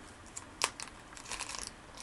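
Small plastic packet crinkling and being picked open by hand: scattered light crackles, one sharper snap well under a second in and a quick cluster of crinkles past the middle.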